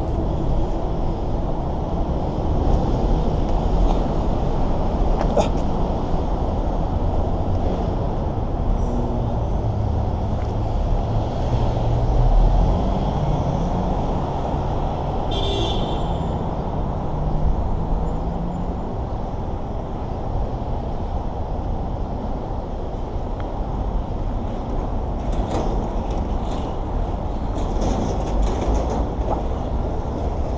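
Steady city road-traffic rumble from the freeway and the street. A vehicle engine passes through the middle, and there is one brief high-pitched sound about fifteen seconds in.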